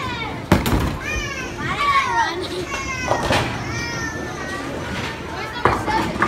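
Children's high-pitched voices calling out and squealing, with no clear words. A sharp, loud knock comes about half a second in, and a few smaller knocks follow.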